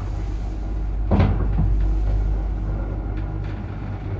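Old Zremb passenger lift car travelling in its shaft: a steady low motor hum and rumble, with a loud clunk a little over a second in and a smaller knock just after.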